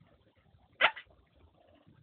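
A parrot gives one short, sharp call a little under a second in, with a brief fainter note right after it.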